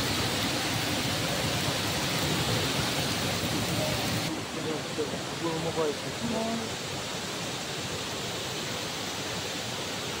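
A thin jet of spring water pours from a rock and splashes steadily onto the wet stone below. About four seconds in, the sound changes to a shallow stream running over stones, softer and less hissy.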